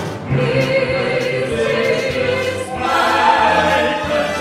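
Four singers, two men and two women, singing a patriotic song in harmony with a pops orchestra accompanying. The voices sound like a small choir, moving from held note to held note, with a new, louder phrase coming in near the end.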